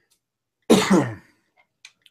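A man clearing his throat once, a short burst of about half a second.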